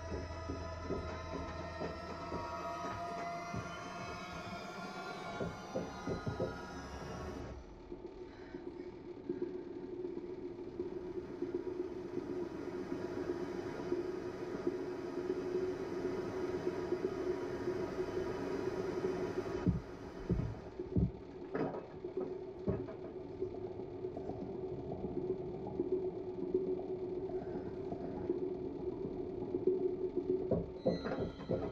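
Film soundtrack music of many overlapping gliding tones that cuts off suddenly about seven seconds in, leaving a steady low drone. A few dull thumps come about two-thirds of the way through.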